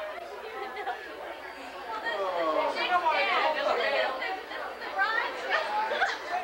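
Several people at a dinner table talking over one another in overlapping chatter, growing louder about two seconds in.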